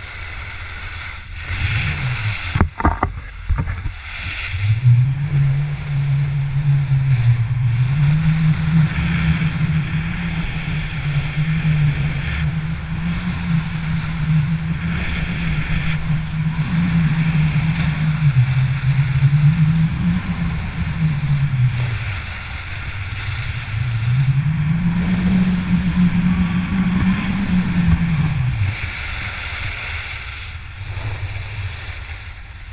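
Skis running fast over groomed corduroy snow, heard as a steady rushing noise with wind on the microphone. Underneath, a low hum rises and falls in pitch in long sweeps. A few sharp knocks come about two to three seconds in.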